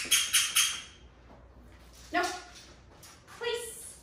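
A squeaky dog toy squeaked four times in quick succession, followed by two longer squeaky sounds about two and three and a half seconds in.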